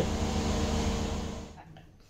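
Steady background hum of a machine running in the room, fading away about three-quarters of the way through.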